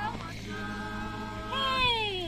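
Women's voices chanting a traditional dance song, holding a steady note; about a second and a half in, a high voice slides downward in a long falling cry.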